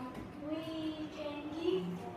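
A girl's voice speaking, with some long drawn-out vowels.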